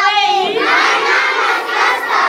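A group of schoolchildren chanting a poem loudly in unison, many voices shouting together.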